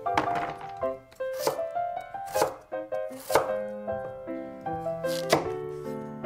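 A stainless-steel kitchen knife chopping a peeled white root vegetable on a wooden cutting board: about five sharp knocks of the blade on the board, a second or two apart, over background music with a light melody.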